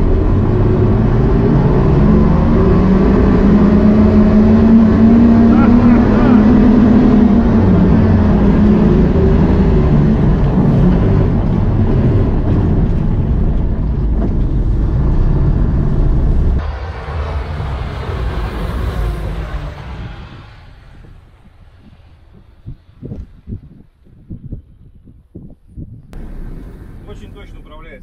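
Cab noise of the BRO Electro all-terrain vehicle accelerating hard on its two electric motors, with no combustion engine: a loud rumble of the drivetrain and body over the ground, with a whine that rises in pitch and then falls. About two-thirds of the way through the noise drops off sharply and fades to quiet, leaving a few scattered knocks.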